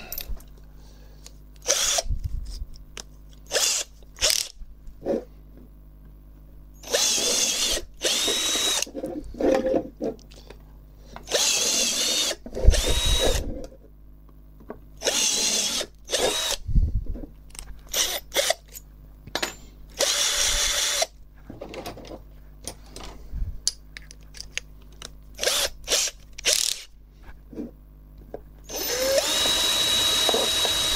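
Cordless drill boring out pilot holes in an enclosure box to a larger size. It runs in several short bursts of a second or two, each with a steady whine, with clicks and knocks of the box being handled between bursts.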